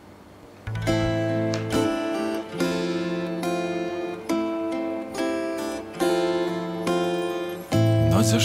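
Acoustic guitar playing the opening chords of a Russian love song, each chord struck and left to ring, roughly one a second, coming in about a second in after a faint hum.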